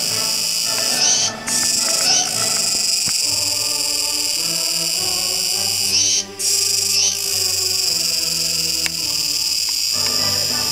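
Kuroiwa's tsukutsuku cicada singing: a loud, steady high buzz with short rising flicks and brief gaps, twice near the start and twice in the middle. Faint low held tones sit underneath.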